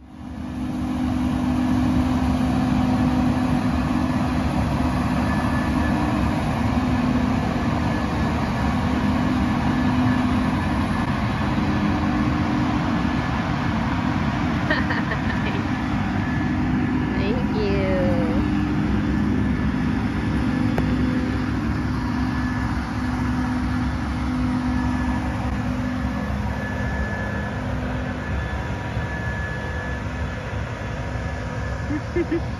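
Engine of a large farm machine working close by: a steady, loud drone with a low hum throughout. A couple of short high chirps come about halfway through.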